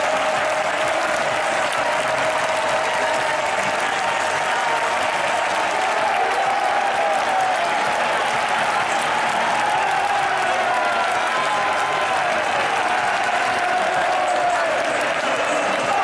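Large football stadium crowd applauding and cheering steadily throughout, with many voices singing together in a drawn-out chant.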